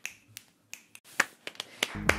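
Sharp, dry finger snaps and clicks, about eight in an uneven rhythm, with near silence between them.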